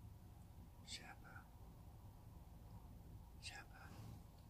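Near silence, broken by two short, faint whispers, about a second in and again near the end.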